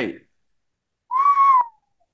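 A person whistles one short, high note about a second in, lasting about half a second and dipping slightly at its end.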